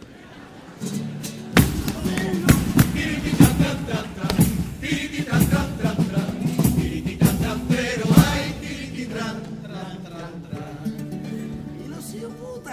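A Cádiz carnival chirigota's band, with Spanish guitars and bombo and caja drums, playing the introduction to a pasodoble. Sharp drum strikes run over held low notes through the middle, and the playing thins out near the end.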